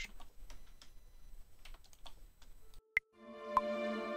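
Light clicks of a computer keyboard and mouse while MIDI notes are edited, then playback of an orchestral mock-up starts about three seconds in: sampled folk harp notes plucked at an even pace over sustained orchestral chords.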